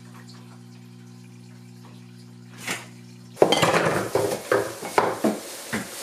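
A steady low hum for the first three seconds or so. About three and a half seconds in, loud crinkling and rustling starts as plastic shopping bags are handled, broken by quick clattering knocks.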